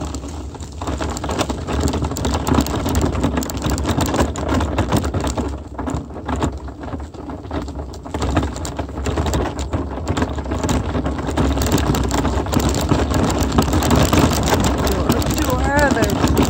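Wheels rolling over a dirt and gravel driveway: a continuous crackle of crunching grit over a low rumble, growing slightly louder toward the end.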